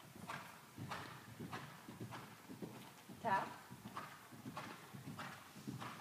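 Horse hoofbeats on the sand footing of an indoor riding arena, a steady rhythm of a little under two strikes a second.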